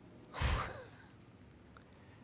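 A person's short breathy exhale into a close microphone, about half a second in, lasting about half a second, over quiet room tone.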